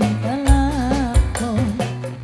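Live tarling band music: a woman singing a wavering, ornamented melody through a microphone over keyboard and a steady kendang-and-drum beat.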